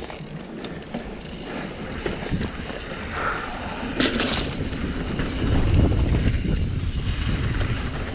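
Mountain bike riding fast down a dirt singletrack: tyres rolling over dirt and roots, with bike rattle and wind buffeting the camera microphone. A sharp knock about four seconds in, and a heavier low rumble in the second half.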